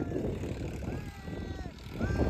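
Distant diesel tractors working a harrowed field: a low, steady engine drone.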